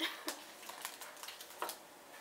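A dark chocolate bar being broken apart by hand: a run of sharp clicks and crackles, with a louder snap near the end.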